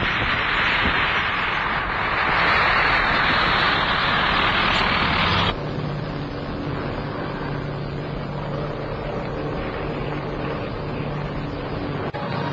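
Light agricultural aircraft's engine running, loud and noisy for the first five or so seconds. It then cuts abruptly to a quieter, steady engine drone with an even hum.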